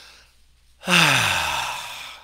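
A man breathing out in one long, audible sigh about a second in, voiced and falling in pitch as it fades: a deep, let-go exhale during a stretch.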